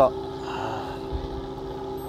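Fishing boat's engine running steadily, an even low hum with a faint low thump a little past the middle.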